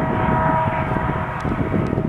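Diesel locomotive hauling a passenger train: a steady, heavy engine rumble, with a horn chord of a few steady tones fading away about halfway through.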